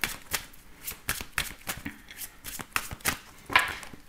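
A deck of Lenormand oracle cards being shuffled by hand: a quick, uneven run of soft flicks and slaps as the cards pass from one hand to the other.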